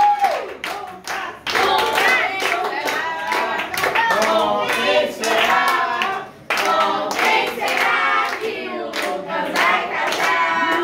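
A group of people singing together while clapping their hands along, with a short break in the singing just after the middle.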